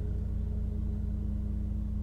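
Steady low drone of a truck's engine and cabin, with a faint constant hum above it, heard through a call line.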